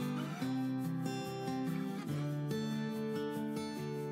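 Background music: acoustic guitar strumming steady chords that change every half second or so.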